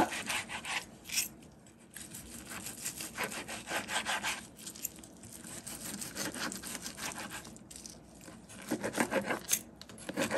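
A large knife sawing back and forth through seared chicken breast, the blade rasping and scraping on the cutting board in runs of quick strokes with a couple of short pauses.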